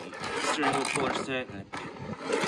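Crinkling and scraping of a shrink-wrapped plastic tool tray being handled against its plastic carry case, with a man's brief hesitant murmurs.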